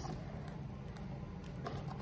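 Steady low background hum, with a couple of faint clicks near the end as a small piece of plastic wrap is handled.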